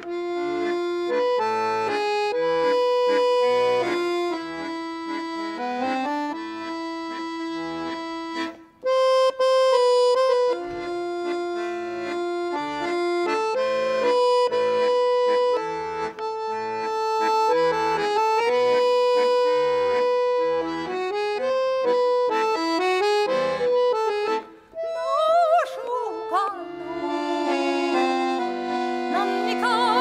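Piano accordion playing a slow melody of held notes over bass chords, breaking off briefly twice. Near the end a woman's singing voice with vibrato comes in over the accordion.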